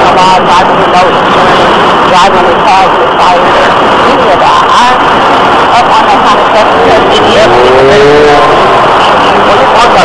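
A motor vehicle running close by, a loud steady engine noise, with indistinct voices over it.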